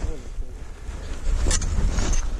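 Wind buffeting the camera microphone, a heavy low rumble that swells and drops, with a single sharp crunch about a second and a half in.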